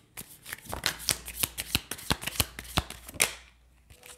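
A deck of fortune-telling cards shuffled by hand: a quick run of light card-on-card clicks and slaps that stops a little after three seconds in.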